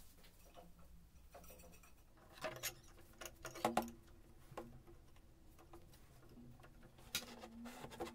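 Light clicks and knocks of handling a marker pen and a small plastic-and-metal clamp on a steel rod, a cluster of them in the middle and one more near the end, against a quiet background.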